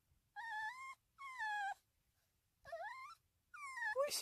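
Shih-Poo puppy whining in four short, high-pitched cries, the third rising in pitch and the last falling. It is attention-seeking crying: the puppy's needs are all met and it wants its owner.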